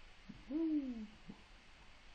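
A man's drawn-out 'ooh' of appreciation, one vocal sound falling in pitch, about half a second in.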